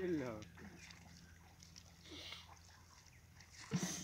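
Mostly speech: a few short spoken words at the start, about halfway and near the end, with quiet in between.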